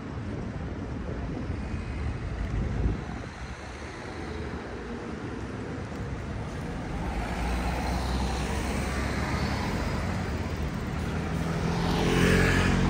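City street traffic: cars and buses running along a boulevard in a steady hum, growing louder over the last few seconds as a vehicle draws closer.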